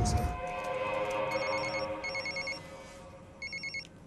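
Telephone ringing with an electronic trilling ring: two short bursts about a second in, then a third near the end. A sustained music chord fades out under the first two rings.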